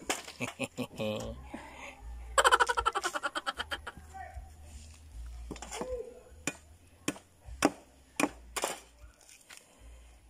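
Fibrous coconut husk being torn off by hand, giving a series of sharp cracks and snaps. There is a short burst of laughter about two and a half seconds in.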